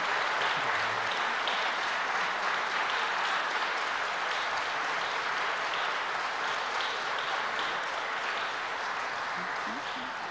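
Large assembly of people applauding, steady dense clapping that eases off slightly near the end.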